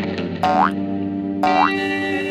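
Two short rising cartoon 'boing' sound effects about a second apart, over steady background music.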